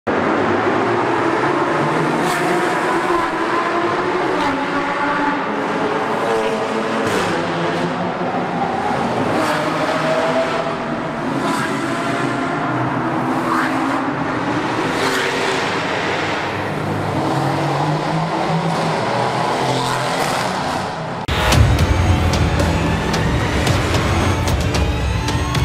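Car engines revving and passing, echoing in a road tunnel, their pitch rising and falling, with sharp cracks every second or two. About 21 seconds in this cuts off abruptly, and loud music with a deep bass starts.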